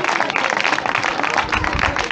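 A group of people applauding: many hands clapping steadily together, with low thumps on the microphone in the second half.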